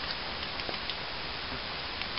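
Steady outdoor background hiss with a few faint, scattered ticks.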